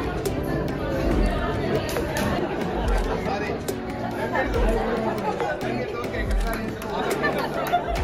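Several people chattering over background music with a slow, deep beat.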